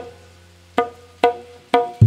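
A live band's percussion in a break between sung lines: four sharp, pitched, wood-block-like strikes, each ringing briefly, over a faint low hum.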